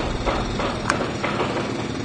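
Steady city street noise, a dense traffic-like din with a few sharp clicks through it.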